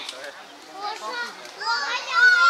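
Young children's high-pitched voices chattering and calling out, louder near the end.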